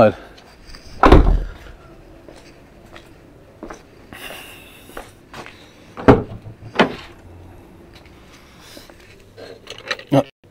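Car door handling on a Fiat 500: a heavy thump about a second in, then two sharper knocks about six and seven seconds in as the outside door handle is pulled and the door is opened.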